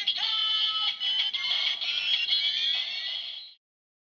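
Electronic transformation sound for the Fourze Ghost Eyecon toy: tinny music with a synthesized voice from a small toy speaker, cutting off abruptly about three and a half seconds in.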